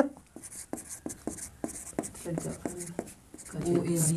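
Marker pen writing on a whiteboard: a run of short, quiet scratchy strokes and taps as a word is written out. A low, murmured voice comes in faintly near the end.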